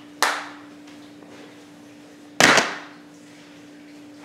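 Sharp plastic clacks of a DVD case being handled and snapped open or shut: one about a quarter second in and a louder, longer one about two and a half seconds in, over a steady low hum.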